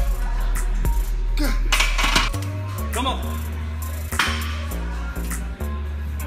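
Hip hop music with a deep bass line that changes note every half second or so, crisp hi-hat ticks and a voice rapping over the beat.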